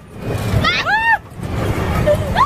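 A woman's high-pitched shrieks and laughing screams while riding an amusement ride, two shrieks that rise and then fall, over a low rumble.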